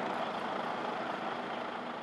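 Heavy lorries' engines running steadily amid traffic noise, slowly getting quieter.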